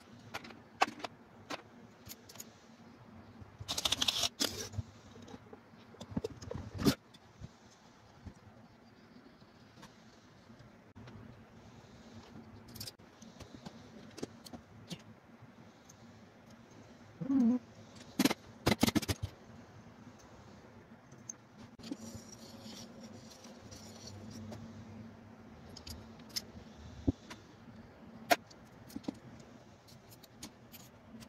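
Scattered metal clicks and clinks of a socket wrench and small steel parts as a CAV diesel injection pump is taken apart on a workbench, with a few louder clusters of clatter.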